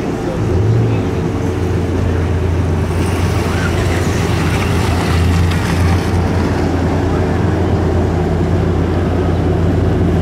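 An engine idling, a steady low drone that holds an even pitch throughout.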